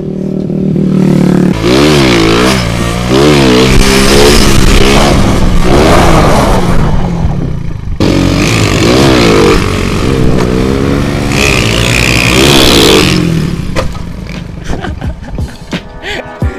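Motorcycle engine revving again and again on the move, its pitch climbing and dropping with the throttle, over rushing wind noise. The revving starts about a second and a half in, breaks off briefly near the middle, and dies down near the end.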